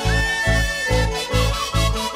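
A live Andean carnival orchestra playing an instrumental passage with no singing. A sustained lead melody glides over guitars, trumpets and keyboard, on a steady bass beat of about two beats a second.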